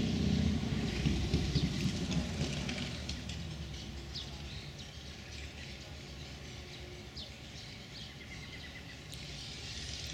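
Outdoor ambience: short, scattered songbird chirps and one brief trill near the end, over a low rumble that fades away over the first three seconds.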